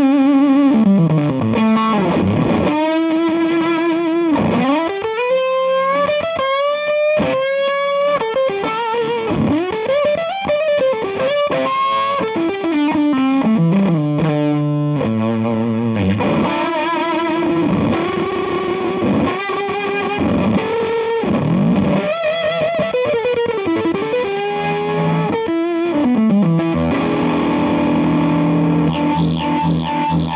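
Electric guitar (Stratocaster) through a Jackson Ampworks El Guapo 100-watt EL34 tube amp with a Fuzz Face fuzz pedal engaged, playing a distorted lead line. The notes are sustained and bend up and down, with vibrato.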